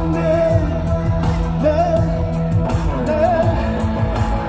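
Live amplified music with a man singing into a microphone over a steady bass line.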